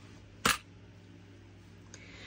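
A single sharp click about half a second in, from a small hard object tapping on the table, over quiet room tone with a faint steady hum.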